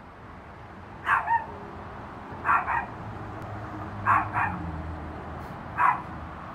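Small dog yipping in short, high barks, mostly in quick pairs, four bursts about a second and a half apart, while it tugs at a plastic bag.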